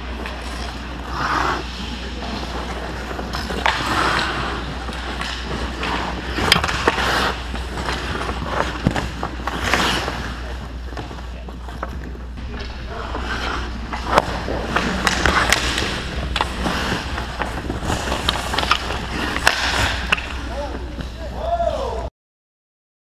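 Ice hockey skates carving and scraping on rink ice, with sharp clacks of sticks and puck throughout, heard from inside the net over a steady low hum.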